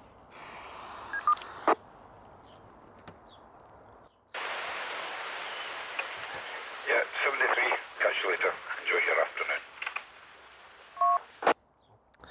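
2-metre FM transceiver's speaker receiving another station's reply: a hiss opens suddenly about four seconds in and a voice comes through the noise for a few seconds. Near the end it cuts off and two short beeps at two pitches sound, followed by a click; there is also a short faint beep about a second in.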